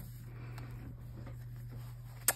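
Quiet room with a steady low hum and faint rustling as hands move onto a paper journal page holding a pen.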